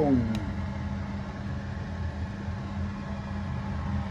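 Steady low machine hum with a constant low tone, and no change in pitch or level.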